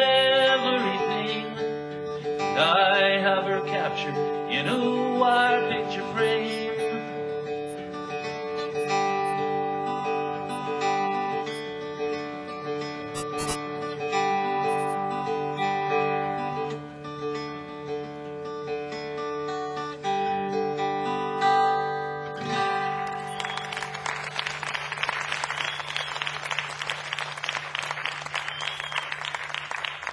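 Acoustic guitar closing out a folk song: a last sung line in the first few seconds, then strummed chords that ring on. About three-quarters of the way through, audience applause takes over.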